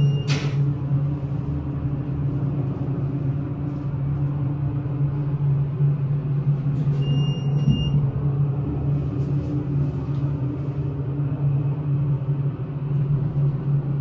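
Modernized 1970s hydraulic elevator car travelling between floors, with a steady low hum and rumble from the drive carried into the cab. A short high beep sounds about seven seconds in.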